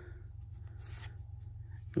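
Pokémon trading cards sliding against each other as one card is moved to the back of the stack, a soft brief rustle about a second in, over a steady low background hum.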